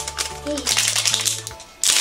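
Plastic wrapping of an LOL Surprise toy ball crinkling and crackling as a layer is peeled open by hand, with a loud burst of crackle near the end, over background music.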